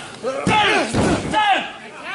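Two sharp slaps on a wrestling ring mat, about half a second apart, during a pinfall count, with crowd voices shouting over them.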